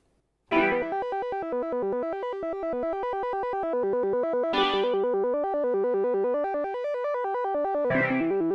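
Martinic AX73 software synthesizer, an emulation of the Akai AX73, playing a fast arpeggiated pattern of synth notes, its arpeggiator running with Hold switched on. The pattern starts about half a second in and is struck afresh a little past the midpoint.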